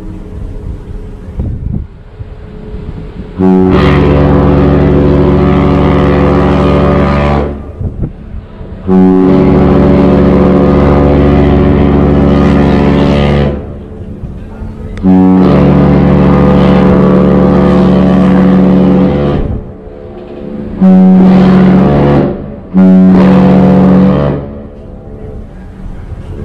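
A ship's horn sounding five blasts at one steady pitch: three long ones of about four seconds each, then two short ones close together.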